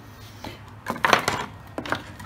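Knocks and a short clatter of model-aircraft parts and tools being handled and set down on a wooden workbench, loudest about a second in.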